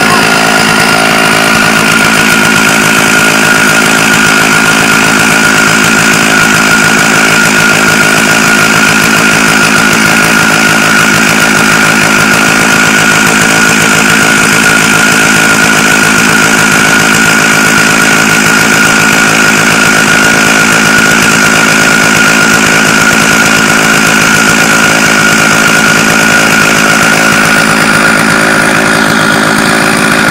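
Two-stroke Stihl chainsaw held at high revs, ripping lengthwise through a log to mill lumber, with a loud, steady engine note that holds its pitch throughout.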